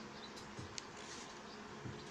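Origami paper being pressed and creased by fingertips on a wooden table: a few light paper clicks and soft finger thumps, over a steady faint hum and hiss.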